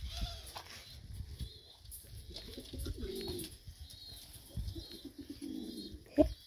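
Domestic pigeons cooing: two low coos, about three seconds in and again near the end, with faint short high chirps in the background.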